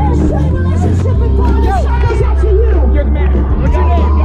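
Loud live pop-punk band music with long held bass notes, under the chatter and shouting of a crowd close by.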